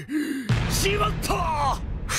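An anime character's strained, gasping yells, over a low rumble that comes in about half a second in.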